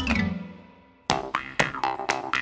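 Children's cartoon music: a falling pitch glide that fades away, then about a second in a bouncy tune starts with short plucked notes, roughly four a second.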